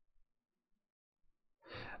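Near silence: room tone, with a soft intake of breath near the end.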